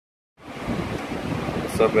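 Wind buffeting the microphone over the steady wash of ocean surf. It starts abruptly about half a second in, after a moment of silence.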